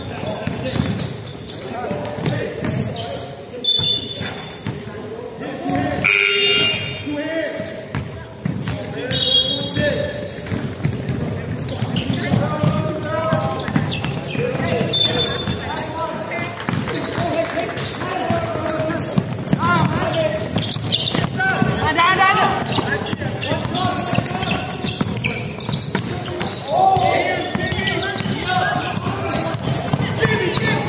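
Basketball being dribbled and bouncing on a hardwood gym floor during play, with players' voices calling out in an echoing sports hall. Short high sneaker squeaks come several times in the first half.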